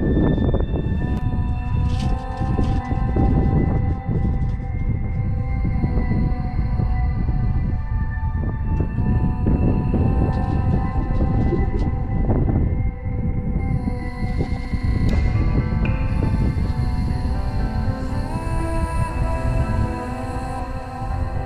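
Background music of slow, held synth chords, with a low rumble of wind buffeting the microphone underneath.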